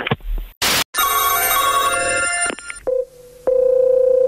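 A short noise burst, then a telephone ringing for about a second and a half. Near the end a steady single-pitch tone comes on the phone line as the next call is placed.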